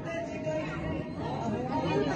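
Several people talking at once in overlapping chatter; no single voice stands out.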